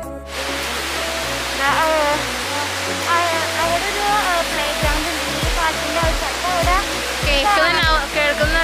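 Steady rushing of river water pouring over a concrete check dam, starting abruptly, with background music running under it and a regular beat coming in about halfway.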